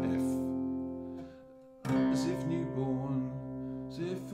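Acoustic guitar in open CGCGCD tuning: a strummed chord rings and fades, and a fresh chord is strummed a little under two seconds in and left ringing.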